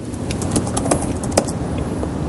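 A few sharp computer-keyboard key clicks as a text search is typed and stepped through in a terminal, over a steady low rumble.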